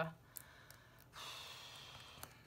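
A soft breath or sigh, drawn for about a second before speech resumes. A couple of faint clicks from hands handling the plastic planner cover come in the first second.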